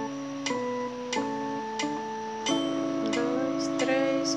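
Electronic organ playing slow held notes of a hymn passage. The notes change a few times in the first two and a half seconds, then a fuller chord is sustained.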